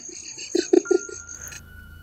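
A man laughing in four short bursts about half a second in, over a faint steady high-pitched whine that stops about a second and a half in.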